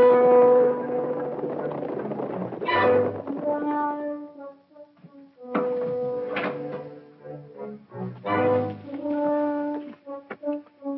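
Orchestral film score led by brass and horns, playing held phrases. There are accented chords about three seconds in and again about eight and a half seconds in, and a brief lull around five seconds.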